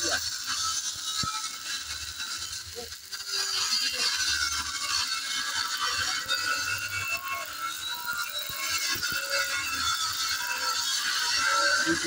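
Stick (shielded metal arc) welding on a rusty steel truck chassis rail: the arc crackles and hisses steadily while a vertical bead is run.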